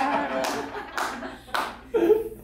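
Audience laughing and clapping after a punchline, a few last bursts dying away.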